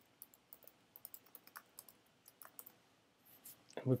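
Typing on a computer keyboard: a quick, irregular run of light key clicks that stops about two and a half seconds in.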